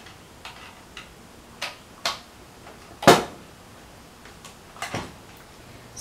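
Scattered clicks and taps of a cable plug being handled and pushed into a jack on a V8 USB sound card, about six in all, the loudest about halfway through.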